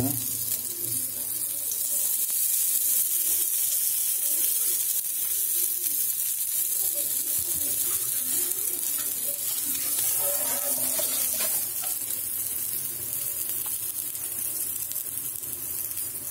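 Mutton dal (shami) kababs shallow-frying on a flat tawa, a steady sizzle of hot oil, with more oil ladled in around them from a steel ladle.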